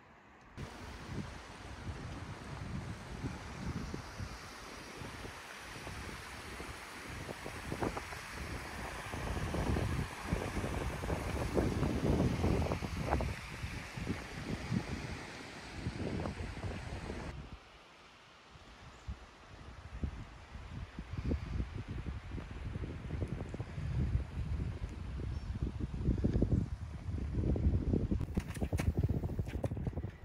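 Gusty wind buffeting the microphone, a rumble that rises and falls in gusts over a steady hiss. The hiss drops away abruptly about two-thirds of the way through, and a few sharp clicks come near the end.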